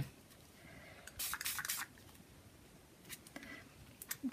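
Small pump-action spray bottle of homemade food-colouring ink misting onto paper: a quick run of three or four short, faint hissing sprays about a second in, and a couple of softer ones near the end.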